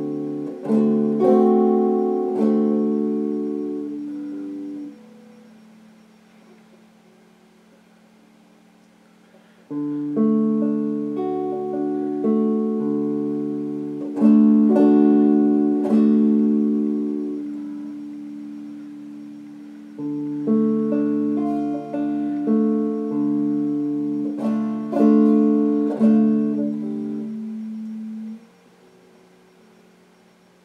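Stratocaster-style electric guitar played with a clean tone: picked chords and single notes left to ring, in three phrases with short pauses between them.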